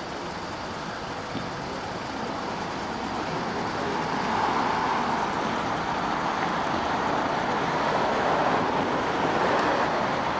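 Vehicle and road traffic noise: a steady rush that grows louder about four seconds in.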